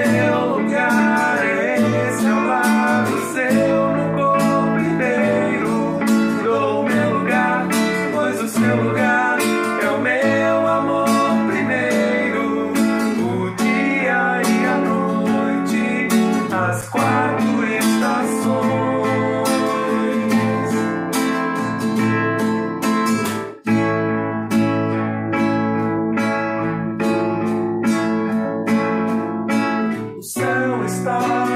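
Acoustic guitar strummed in a steady rhythm, with a man singing the melody over it. The strumming breaks off briefly about three-quarters of the way through.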